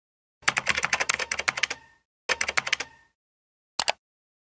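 Rapid typing on a keyboard, about ten key clicks a second, in two runs with a short pause between, then a quick double click near the end.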